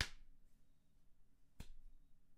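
Two sharp finger snaps about a second and a half apart, the first the louder.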